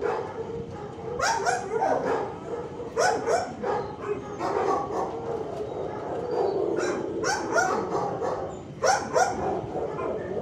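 Dogs barking in bouts of a few barks at a time, with short pauses between bouts.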